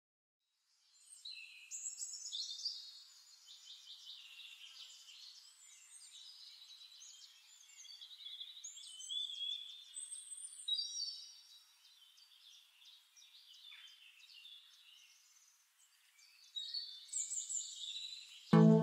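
Faint birdsong: several birds chirping and trilling at once in high, quick calls. It starts about a second in, thins to almost nothing about three-quarters of the way through, and picks up again near the end.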